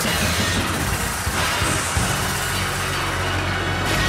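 Dramatic soundtrack music mixed with dense rushing transformation sound effects from a tokusatsu hero's transformation. About two seconds in, a steady low held tone settles underneath.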